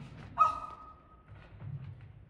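A woman's short high-pitched shriek, starting sharply and held on one pitch for under a second before fading: Titania recoiling from the ass-headed lover she has woken beside.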